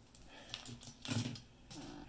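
Handling noise as multimeter test leads are moved off a battery pack and the plastic-and-circuit-board pack is picked up from a wooden desk: a few light clicks and rustles, with a short low hum about a second in.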